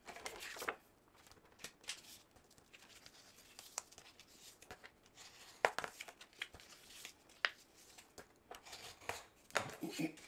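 Scored white cardstock being handled, folded along its score lines and creased: faint, scattered paper rustles with a few light taps and ticks.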